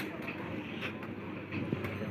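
Sealdah-section EMU local train rolling slowly along the platform: a low, steady rumble with two light clicks about a second apart.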